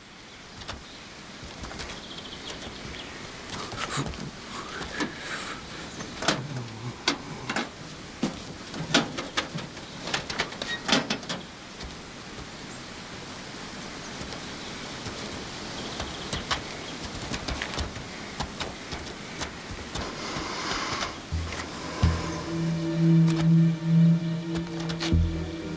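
Scattered metallic knocks and clanks over an outdoor noise bed, typical of a truck's drop-side latches being undone and the side let down. A low, sustained music chord comes in near the end.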